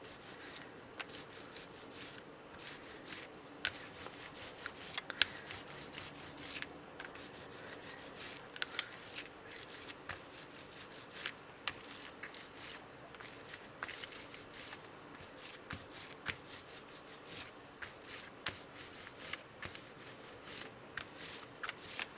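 A rubber brayer rolled over paper with raised, dried fibre-paste texture: a faint rubbing with many small, irregular clicks and ticks.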